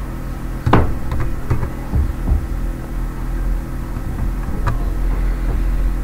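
A few separate computer keyboard keystrokes over a steady electrical hum, the loudest keystroke about a second in.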